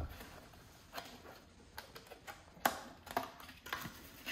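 Plastic clamshell memory packaging being opened and handled: a few scattered light clicks and crinkles of plastic, the sharpest about two and a half seconds in.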